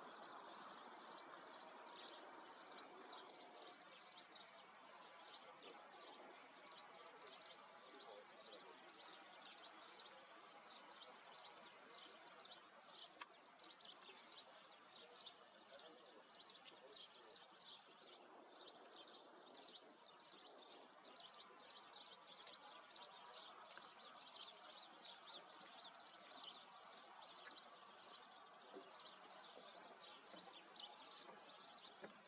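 Faint outdoor ambience: small birds chirping, a steady run of short high chirps a few times a second, over a low background murmur.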